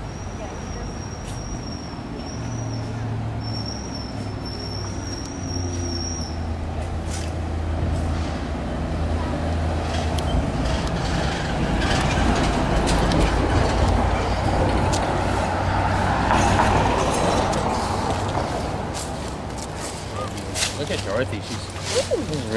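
Traffic on a town street with a heavy vehicle's engine running, growing louder through the middle and easing off near the end.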